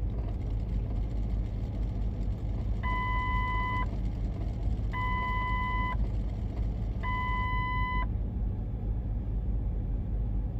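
Steady low rumble of city street traffic. A vehicle's reversing beeper sounds three times, starting about three seconds in, each beep a steady tone about a second long with about a second between them.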